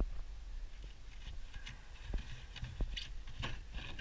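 Scattered light knocks and scrapes of loose rotten timber and fibreglass debris being handled in a boat's stringer channel, a few sharp clicks about two to three and a half seconds in.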